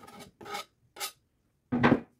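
A steel kitchen knife scraping chopped herbs off a wooden cutting board into a glass bowl: three short scrapes in the first second, then a louder, longer scrape near the end.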